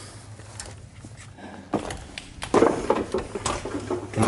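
Footsteps scuffing and crunching on loose stones and rubble, growing into a louder run of clattering steps about halfway through as someone climbs down onto the rubble floor, with a small room's echo.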